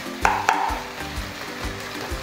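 Marinated pork and sliced onions sizzling in a nonstick wok while being stirred with a wooden spoon, with a couple of sharp knocks of the spoon against the pan near the start. Soft background music runs underneath.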